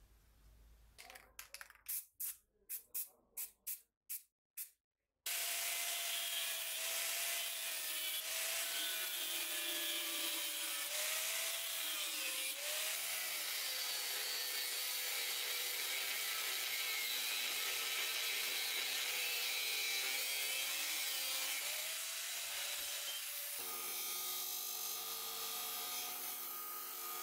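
About seven short hisses from a spray-paint can, then an angle grinder's cutting disc cutting through leaf-spring steel, a loud steady grinding whose pitch wavers as the disc is pressed into the cut. Near the end this gives way to the steadier hum of a bench disc sander's motor.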